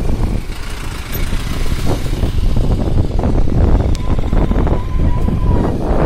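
Motorcycle running on the move, mixed with heavy, uneven wind rumble on the microphone. A faint steady tone comes in about four seconds in and stops near the end.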